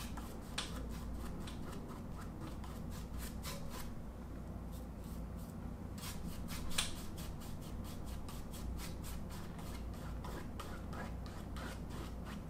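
Paintbrush bristles stroking back and forth across stretched canvas in quick, short, repeated strokes, blending wet acrylic paint softly downward. One stroke a little past halfway is slightly louder.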